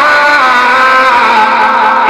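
A man's voice singing Islamic devotional verse through a microphone, holding one long note that dips slightly near the start and breaks off at the end.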